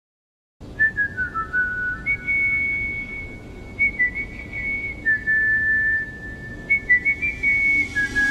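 A whistled melody opens a recorded pop song, starting about half a second in. It is one slow tune of held and sliding notes over a soft low background noise.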